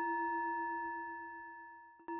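A struck Tibetan singing bowl rings on and slowly dies away. Its low hum wavers slightly, with fainter higher overtones above it.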